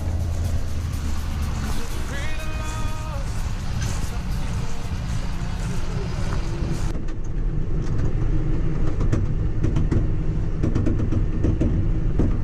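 John Deere tractor engine running steadily, a low drone. About seven seconds in, after a cut, it runs on rougher with light rattling.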